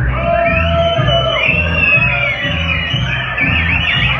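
Live acoustic band playing: an upright bass plucking a steady beat of about two notes a second, under guitar and a high, sliding melody line.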